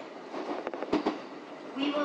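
Train running, heard from inside the carriage, with a few sharp clicks of the wheels crossing rail joints about a second in.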